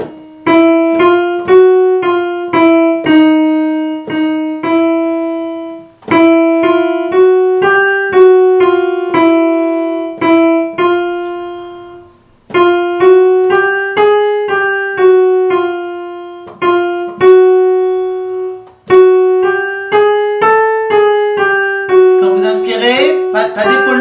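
Digital keyboard played in a piano voice, picking out chromatic half-step runs: single notes about half a second apart climb and fall by semitones, in phrases of about six seconds with short breaks between.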